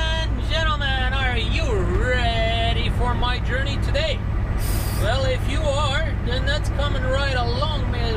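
Volvo 780 semi-truck's Cummins ISX diesel and road noise at highway speed, heard inside the cab as a steady low drone. A short hiss comes about halfway through.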